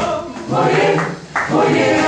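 Church choir singing a repeated gospel chant, with brief breaks between phrases, one about a second in.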